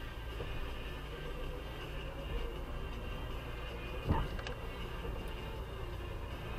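A car moving at walking pace, heard from inside the cabin: a steady low drone from the engine and tyres, with a single sharp knock about four seconds in.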